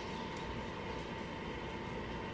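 A fireplace running: a steady, even hiss with a faint constant tone through it, unchanging throughout.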